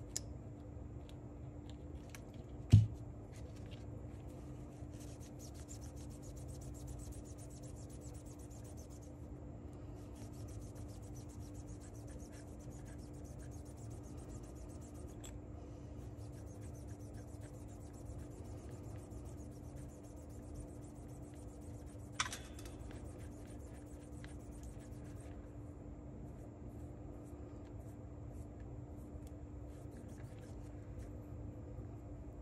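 Cloth rubbing on a small metal shaft from a cassette-deck transport, a faint scratchy wiping that comes and goes as old hardened grease is cleaned off. One loud knock about three seconds in and a sharp click a little after twenty seconds, over a steady low hum.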